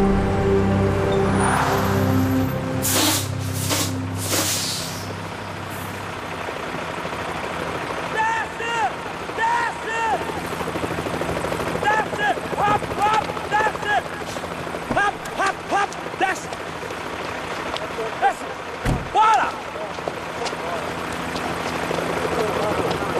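A truck's air brakes hiss in several bursts as it stops, under a held tense music chord that fades out. Then men shout short commands again and again.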